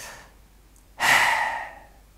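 A man sighing: a faint breath at the start, then a louder breath out about a second in that lasts under a second.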